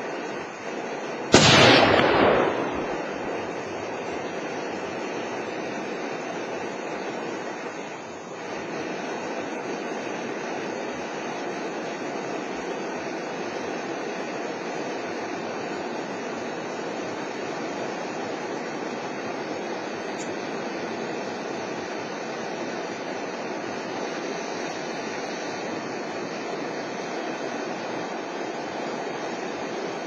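A single shot from a .30-calibre Lazzaroni Warbird hunting rifle about a second and a half in, loud and sharp, with an echo that dies away over about a second. A steady rushing background noise fills the rest.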